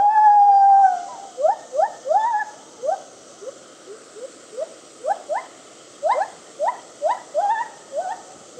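Gibbon calling: one long, slightly falling hoot, then a string of short rising hoots, two to three a second, fading a little midway and growing louder again toward the end.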